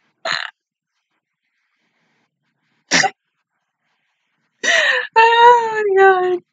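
A woman laughing in two short bursts, then a longer drawn-out vocal sound that slides down in pitch near the end.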